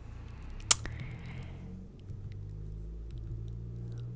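Quiet room hum with a single sharp click a little under a second in: a computer mouse button being clicked.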